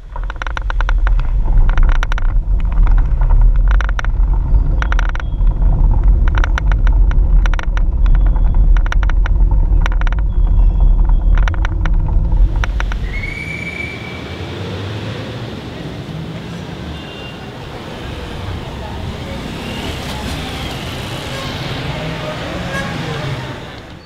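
Heavy wind rumble with irregular rattling knocks from a camera riding on a moving bicycle. About halfway through it gives way to quieter street noise with road traffic.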